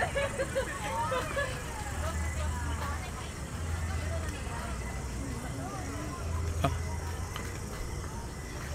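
Indistinct background voices of people talking, over a low rumble that swells a few times, with one sharp knock near the end.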